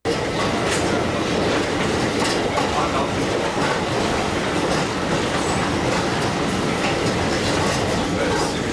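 Tram running at speed along its track, heard from on board: a steady rumble of steel wheels on rails with occasional clicks over the rail joints.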